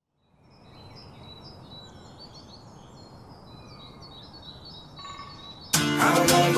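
Quiet background ambience fading in, with birds chirping over a steady low noise. Near the end the song's full-band music comes in loudly.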